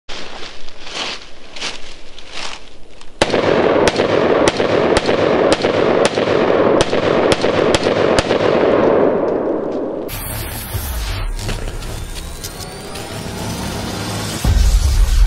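A handgun firing a string of shots, softer and more spread out for the first three seconds, then sharp reports about two a second until roughly eight seconds in. Near ten seconds this gives way to a low rumble and sweeping whooshes of an intro sound effect.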